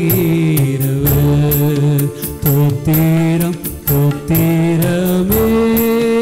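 Devotional song: a man singing long held notes in short phrases over a steady percussion beat.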